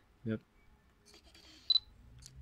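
Fujifilm X-Pro1 focus-confirmation beep, one short high beep near the end as autofocus locks on the subject. It is preceded by faint clicking from the XF 35mm f/1.4 lens focusing.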